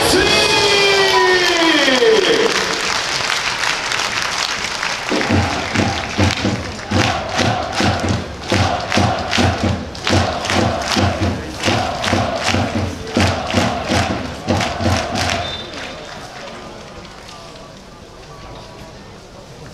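Football supporters chanting together to a regular drum beat, about two to three beats a second. The chant is strongest for about ten seconds in the middle and then fades. Before it, stadium music ends in a falling electronic sweep.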